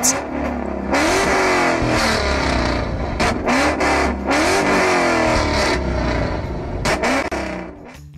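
Ford Mustang engine revved several times, each rev rising and falling in pitch. Sharp cracks come from the exhaust as a flame kit ignites fuel in it: a quick run of them around the middle and one more near the end.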